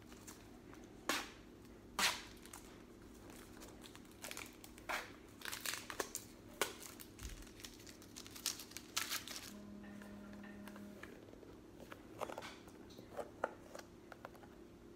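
Thin plastic film and a clear plastic box crinkling and crackling as they are unwrapped and handled. There are two sharp crackles in the first couple of seconds, a dense run of crackling in the middle, and a few more near the end.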